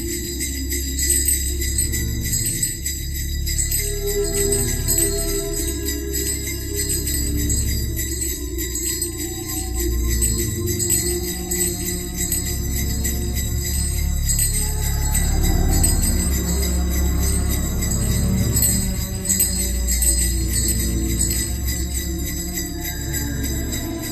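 Experimental electronic collage music: a dense, rapidly flickering high shimmer with steady high tones runs over low droning bass tones, with short held notes in between. The middle range swells up briefly a little past halfway.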